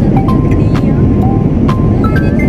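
Steady low cabin noise of a Boeing 787 airliner in flight, with light background music of short single mallet-like notes over it.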